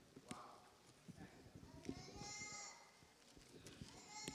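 Near silence with faint taps and knocks, as of hands handling something on a lectern close to a microphone. About two seconds in comes a short, high-pitched wavering vocal sound.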